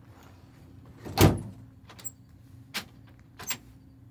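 Tailgate of a Ford Super Duty pickup slammed shut: one heavy metal slam about a second in, followed by three lighter clicks and knocks.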